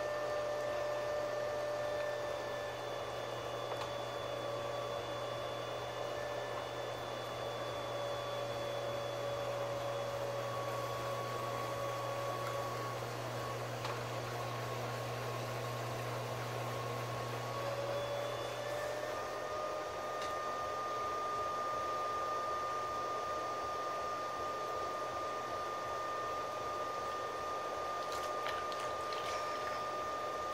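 Electric potter's wheel motor running at full speed while wet clay is centered on it, a steady whine whose pitch dips briefly about halfway through and comes back up a little higher near two-thirds of the way in.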